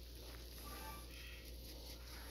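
Faint, near-quiet room tone with a steady low hum and only a few faint soft ticks; the shredded cheese being sprinkled over the pizza makes little audible sound.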